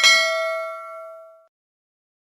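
A single bell-like ding from a YouTube subscribe-and-notification-bell sound effect, struck once and ringing out, fading away over about a second and a half.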